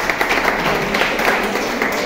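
A small group applauding with rapid, dense hand claps.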